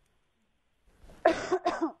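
A person coughing: a quick run of about three coughs starting about a second in.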